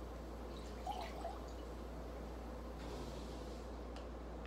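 Thick vegetable juice poured from a bottle into a glass measuring cup, a faint pour with a couple of small glugs about a second in.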